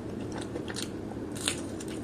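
Close-miked chewing of a mouthful of food: a run of irregular wet crunches and clicks, one sharper crunch about one and a half seconds in.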